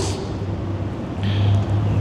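A pause between a man's sentences, filled by a steady low background hum with a faint wash of noise. A short hiss comes near the end.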